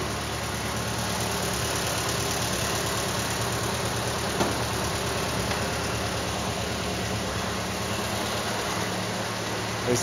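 1929 Ford Model A's four-cylinder flathead engine idling steadily with an even putt-putt. There is one small click about halfway through.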